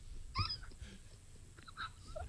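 Quiet, stifled laughter: a short, high squeak of a laugh about half a second in, then a few faint breathy bits.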